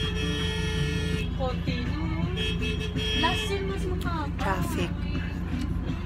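Steady low rumble of a shuttle bus driving, heard from inside the cabin. Talking and sustained musical tones lie over it.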